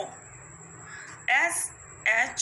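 A woman's voice saying one short spelled-out letter about a second and a half in, over a faint steady high-pitched whine.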